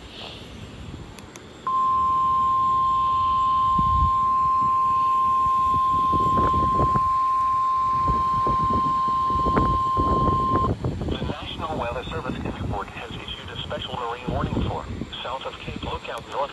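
NOAA Weather Radio receiver sounding its 1050 Hz warning alarm tone, one steady high tone that starts about two seconds in and holds for about nine seconds, then cuts off. The radio's synthesized voice then begins reading the Special Marine Warning.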